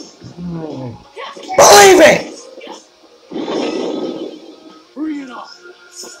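Fight soundtrack of an animated battle video: a loud shout about two seconds in, then a noisy rushing blast about a second later, with music underneath.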